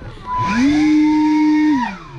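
Leaf blower fired in a short burst. Its motor whine rises to a steady pitch about half a second in, holds for over a second, then falls away near the end as the trigger is released.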